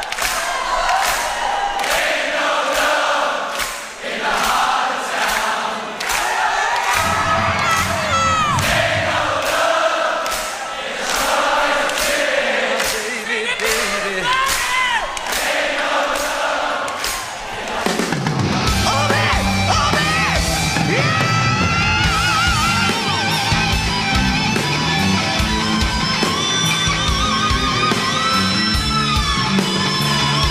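Live hard-rock band performance. For the first half a crowd sings along over a steady beat of about two strokes a second with little bass. About 18 seconds in the full band comes in, with bass, drums and a bending electric-guitar lead.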